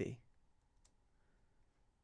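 A single faint computer mouse click about a second in, advancing a presentation slide, in an otherwise quiet room.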